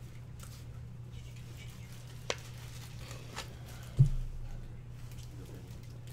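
1984 Topps cardboard hockey cards being handled and sorted: soft rustling and sliding with a couple of sharp clicks, then a dull thump on the desk about four seconds in. A steady low hum runs underneath.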